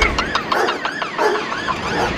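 Drum and bass mix in a breakdown: the bass and kick drop out, leaving a wailing siren sample that rises and falls about three times a second over light hi-hat ticks.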